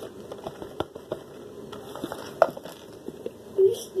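Light scattered taps and clicks as powder is shaken from a container into a bowl of liquid, with one sharper click about halfway through, over a steady low hum.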